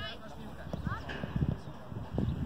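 Short, high-pitched shouts of young football players calling across the pitch, one near the start and another about a second in. Scattered dull low thumps run under them.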